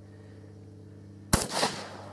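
A 12-gauge shotgun firing a wax slug: one sharp shot about a second and a half in, trailing off in a short echo.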